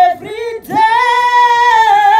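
A woman singing solo into a handheld microphone. One sung phrase ends right at the start, and after a short breath she holds a long high note from just under a second in.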